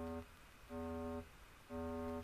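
A software synthesizer in Digital Performer plays back a MIDI cue: the same single note repeated, each note about half a second long, about one a second, with short gaps between.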